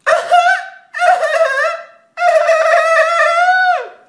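A person's voice holding three long, high-pitched wailing notes in a row, the last and longest dropping in pitch as it cuts off.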